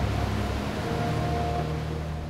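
Water and sediment gushing from a dredging discharge pipe: a steady rushing noise with a low rumble, under background music with held notes.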